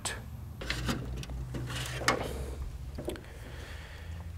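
Several clicks and clunks as the car's hood latch is released and the hood is raised, over a steady low hum in the shop.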